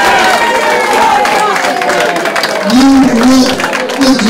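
Crowd cheering and clapping, with many voices calling out over one another; a man's voice shouts briefly near the end.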